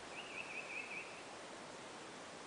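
A bird gives a short warbling call, its pitch wavering quickly up and down, lasting about a second near the start, over a steady outdoor background noise.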